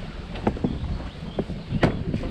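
Quad bike (ATV) engine running at idle, a steady low rumble with wind on the microphone, broken by a few sharp knocks about half a second in, midway and near the end.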